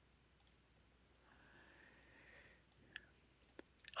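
Near silence with a handful of faint, scattered computer mouse clicks.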